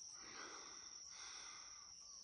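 Faint, steady high-pitched insect chirring, with a soft hiss underneath that fades about a second in.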